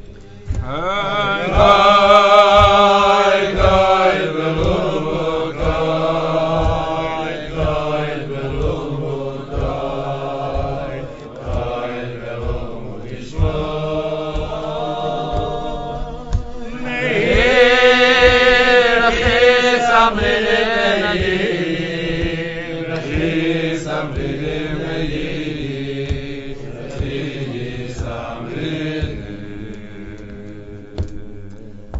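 Voices singing a slow, wordless chant-like melody with wavering held notes, rising to a fuller swell about two-thirds of the way through, over low rhythmic thumps about twice a second.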